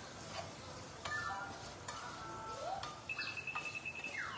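A wooden spatula stirring and scraping diced onions and tomatoes in a non-stick frying pan, with soft scattered clicks. A thin, steady high tone sounds through the last second.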